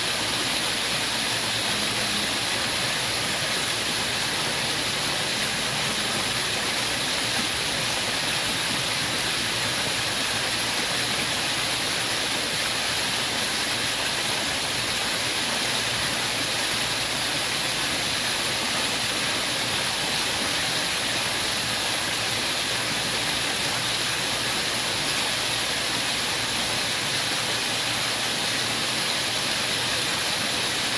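Fountain water jets shooting up and splashing back down into a shallow pool: a steady, even rush of falling water.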